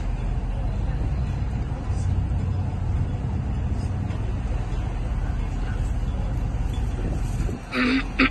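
Steady low rumble of a boat's engine under way, with outdoor noise. A short dip and a sudden louder sound come right at the end.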